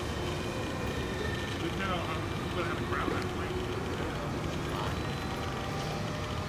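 Radio-controlled model airplane flying past overhead, its engines a steady distant drone, with faint voices of onlookers around two to three seconds in.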